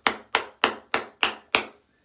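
An airless-pump bottle of aftershave balm slapped against the palm of a hand: six sharp, evenly spaced slaps, about three a second. The sudden stops are meant to remix a balm whose scent has separated, since shaking alone does not do it.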